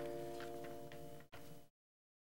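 A held organ chord of several steady tones, with a few faint clicks over it, cut off abruptly about a second and a half in.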